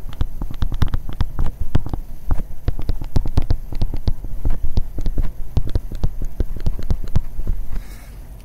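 Stylus tapping and scraping on a tablet surface while handwriting, a quick, irregular run of sharp clicks and knocks close to the microphone, over a steady low hum.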